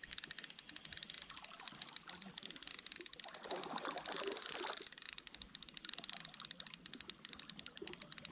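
Fishing reel being wound in: a fast, faint, even ticking that goes on throughout.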